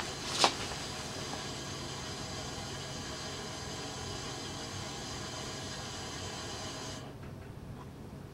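A steady hiss with faint humming tones under it, broken by one short sharp sound about half a second in. The upper hiss cuts off abruptly about seven seconds in.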